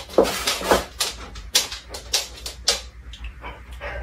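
A dog whimpering, over a run of sharp clicks and taps coming every fraction of a second.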